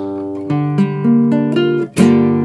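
Nylon-string acoustic guitar: a chord rings, then single notes are picked one after another over it, about five of them, as a chord progression is worked out by ear.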